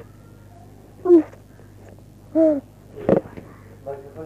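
A newborn baby giving two short cries about a second apart, the first falling in pitch. A brief sharp noise follows near the end.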